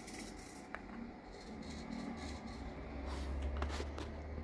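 Small hobby servo motors in an animatronic figure whirring in short bursts as the potentiometer knobs that drive them are turned, with a single click under a second in and a low hum building through the second half.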